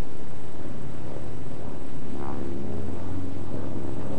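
Propeller aircraft's piston engine droning steadily in flight, its low note growing stronger about halfway through.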